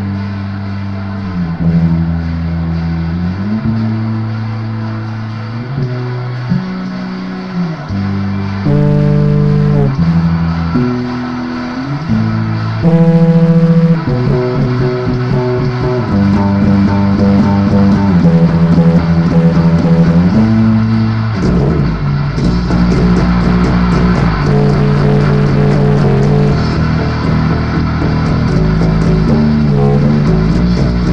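Electric bass guitar plucked in held, stepping low notes, playing a cover of a rock song. It gets louder about 13 seconds in, and from about 22 seconds in a fuller band with cymbals plays along with it.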